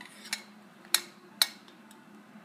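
Four light, sharp clicks of a glass bowl and a stainless-steel flour sifter as cocoa powder is tipped into the sifter.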